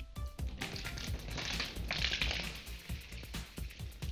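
Water poured from a glass over a person's head, splashing and spattering through hair and onto clothes for a couple of seconds, strongest in the middle. Background music with a beat plays underneath.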